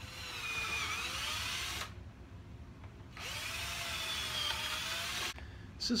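Power drill pre-drilling screw holes in a pine one-by-two, in two runs of about two seconds each with a short pause between. The motor's whine dips and rises in pitch as it drills.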